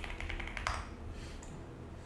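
Computer keyboard typing: a quick run of keystrokes at the start, then a single sharper click about two-thirds of a second in, over a faint low hum.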